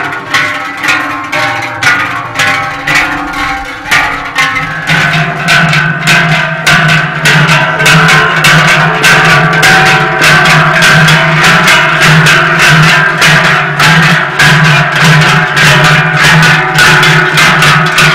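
Large cowbells clanging in a swaying rhythm as the mummers who wear them walk: slow, separate strokes at first. From about five seconds in comes the denser, steadier clanging of pairs of big cowbells carried on the backs of Basque joaldunak.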